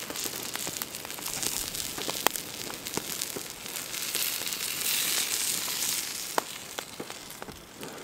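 Beef burger patties sizzling on a hot flat stone over a wood campfire, with sharp crackles and pops from the burning wood. The sizzle swells in the middle as the freshly flipped patties settle onto the hot stone.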